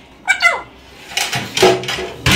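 An Alexandrine parakeet calling: two quick, falling, pitched calls about a quarter second in, then a louder, harsher squawk through the second half.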